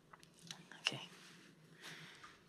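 Quiet room tone with a steady low hum, a few faint short clicks in the first second, and a soft breath near the end.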